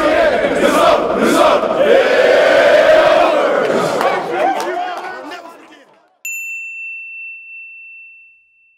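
A group of football players shouting and chanting together, fading out over a couple of seconds; then, after a brief gap, a single bright chime strikes and rings on, slowly dying away.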